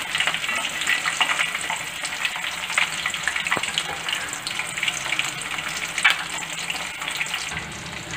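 Garlic cloves and green chillies frying in hot oil in an aluminium kadai: a steady sizzle with many small crackles and pops.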